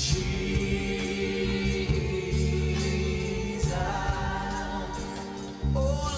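Church worship music: voices singing over keyboard accompaniment with a low bass line, the singing growing stronger near the end.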